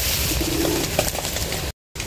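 A dove cooing once, faintly, over outdoor background noise, with a few small clicks. The sound cuts out abruptly near the end.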